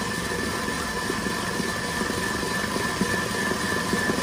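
Stand mixer's motor running steadily at high speed, its wire whisk whipping whole eggs and sugar into a foam at full volume. An even drone with a held whine on top.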